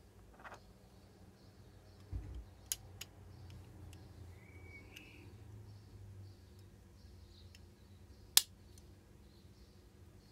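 Parts of a diecast model car being fitted back together by hand: faint handling noise, a dull bump about two seconds in, a few small clicks, and one sharp click about eight seconds in, the loudest sound.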